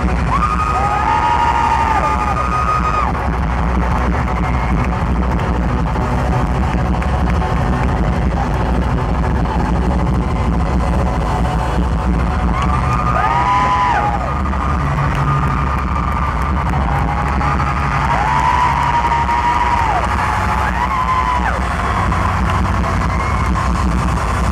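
Live pop-rock band playing loudly in an arena, recorded from the audience, with a steady heavy bass. Long high screams or whoops from the crowd rise over the music near the start, again around the middle and several times toward the end.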